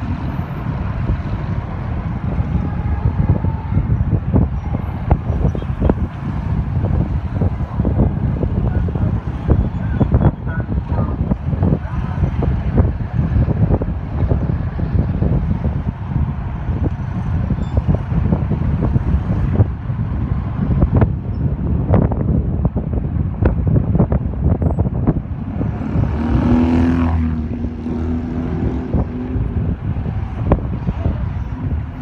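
Street traffic in slow, congested flow heard from within it: a steady low rumble of engines with frequent short knocks and bumps, and a louder pitched sound lasting about two seconds near the end.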